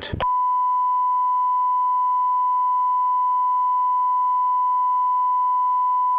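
Broadcast line-up test tone: a single steady pitch that starts a moment in and holds at an even level. It fills the gap in the feed's looped holding announcement while the committee is suspended.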